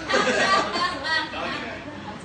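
Indistinct chatter of several voices with laughter, loudest in the first second and dying down after.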